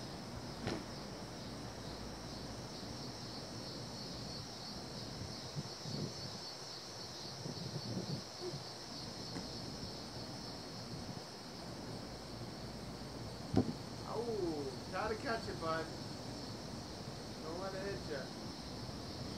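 Steady, high-pitched chorus of insects with a fine, even pulse. About three-quarters of the way through there is a single sharp knock, followed by a few short, faint voices.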